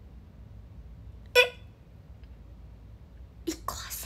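A young woman's voice: one short, loud, high-pitched vocal sound about a second and a half in, then breathy, half-whispered syllables near the end, over a faint low hum.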